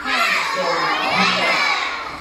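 A group of young children shouting together, many high voices at once, starting suddenly and dying away near the end.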